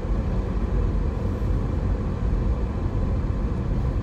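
Car cabin noise while driving slowly: a steady low hum of engine and tyres on the road.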